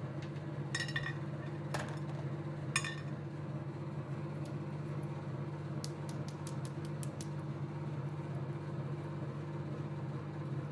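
Hard sweets set down on a glass dish: three sharp clicks of candy against glass in the first few seconds, then a quick run of light ticks a little past the middle, over a steady low hum.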